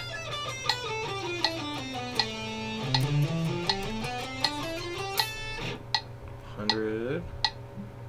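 Electric guitar playing a fast single-note scale run in groups of three notes per string, stepping down in pitch and then climbing back up, over a metronome clicking at 80 beats per minute. The run ends a little past the middle, and the metronome clicks on alone.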